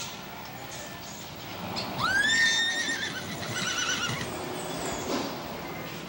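A horse whinnies once, starting about two seconds in. The call rises in pitch, holds, breaks into a quavering trill and falls away, over about three seconds.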